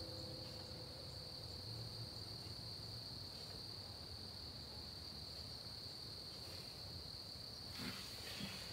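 Crickets singing steadily in one unbroken high-pitched tone, faint, with a brief knock or rustle near the end.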